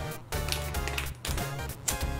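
Background electronic music in a chiptune video-game style, with a pulsing synth bass line.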